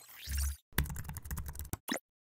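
Keyboard typing sound effect: a rapid run of key clicks lasting about a second, after a short swoosh with a low thump, and one separate click just before the end as the search is entered.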